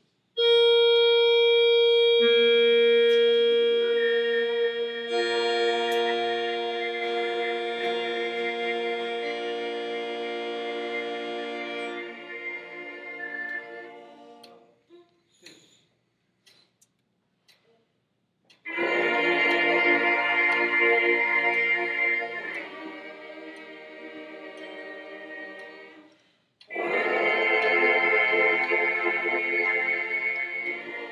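A group of brass players buzzing on their mouthpieces alone, building a sustained chord for a harmony and pitch-matching exercise: one note starts, a lower note joins a couple of seconds later, and more notes enter before the chord fades out. After a pause of a few seconds, a loud held chord drops to a softer one and stops, and another loud chord begins near the end.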